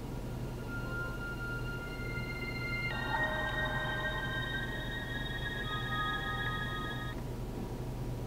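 Electronic start-up tune from an Android headrest screen as it boots: steady held synthesized tones begin about half a second in, turn into a fuller chord about three seconds in, and cut off about a second before the end. A steady low hum runs underneath.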